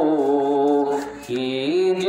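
A man's voice singing a devotional song into a microphone in long held notes. The pitch steps down early on and breaks off briefly just after a second in, then slides up into a long held note.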